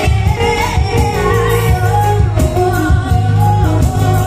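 A female vocalist sings a pop ballad live through a microphone, backed by keyboard and acoustic guitar.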